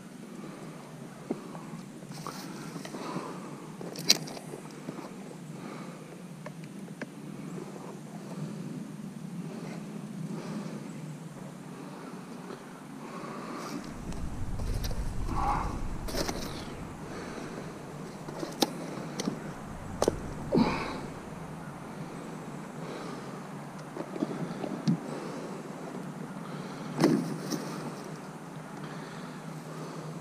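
Sticks and brush being handled and moved by hand: scattered rustling with several sharp cracks and snaps. The loudest come about four seconds in and near the end, and there is a brief low rumble around the middle.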